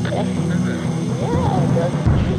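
Ambient electronic music: a steady low drone, with a faint, indistinct voice from an intercepted phone conversation over it.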